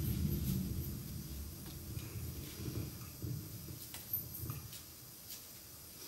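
Quiet room noise: a low rumble with a few faint clicks, growing quieter toward the end.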